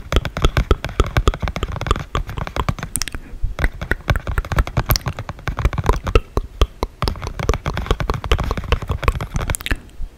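Dry ASMR mouth sounds close to the microphone: a rapid, uneven run of tongue and lip clicks and pops, many a second, with a low rumble underneath and a brief lull about three seconds in.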